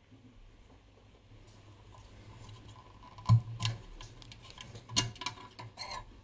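A few sharp metallic clicks and knocks as a metal tube shield can is worked loose and pulled off an ECC81 oscillator valve in an old receiver chassis. The loudest click comes about three seconds in, and another about five seconds in.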